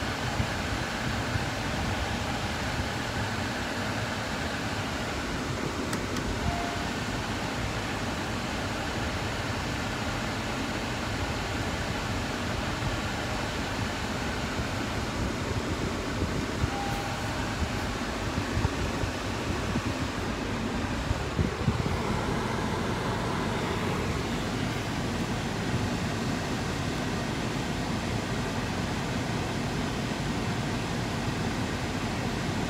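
Steady rush of a 2021 Honda Passport's climate-control fan heard inside the cabin, with two short soft beeps, about six seconds in and again near seventeen seconds.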